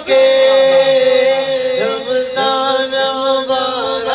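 Male voice reciting a naat (Urdu devotional song) unaccompanied into a microphone, holding long notes with ornamented turns. A steady low hummed drone from a second voice runs beneath it.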